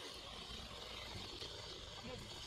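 Faint steady outdoor background: a low rumble under a faint high hiss, with no distinct event.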